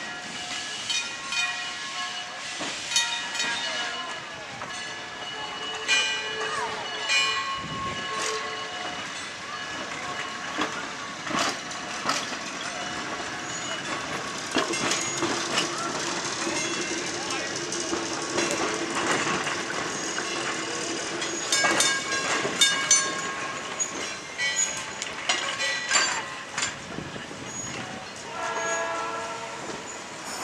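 Vintage trolley cars rolling past on rail, their wheels clicking and knocking over the track joints. A steady hum is held for several seconds midway, as the Los Angeles Railway streetcar draws near.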